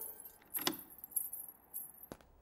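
Faint metallic jingling and clicks: a few short strikes spread through the quiet.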